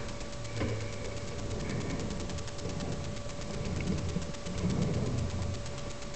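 Low rubbing and rumbling from a small handheld camera being handled, with fabric or fingers brushing over its microphone, over a steady faint high hum.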